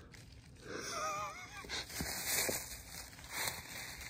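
Plywood creaking against a tree trunk as the sheet is pulled, stuck where the tree has grown into it. It gives one wavering squeak of about a second, followed by faint scraping.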